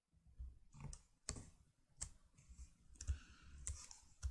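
Faint clicks of a computer pointing-device button, a few sharp ones standing out roughly a second apart.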